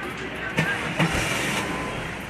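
Two sharp knocks about half a second apart, over a steady background of voices.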